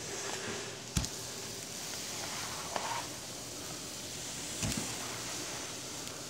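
Kitten playing on a tile kitchen floor: steady low room hiss with a sharp knock about a second in and a duller thump near five seconds.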